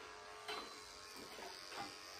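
Electric dog grooming clipper fitted with a #3 blade, running with a faint, steady buzz.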